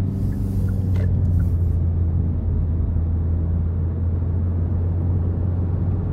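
A Hyundai Venue's 1.6-litre naturally aspirated four-cylinder runs under acceleration, heard from inside the cabin. Its IVT holds the engine at a steady, droning note over road noise. A turn-signal indicator ticks about three times a second for the first second and a half, then stops.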